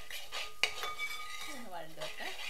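A metal spoon stirring and scraping chopped onions around a coated frying pan, with one sharp clink of spoon on pan about half a second in.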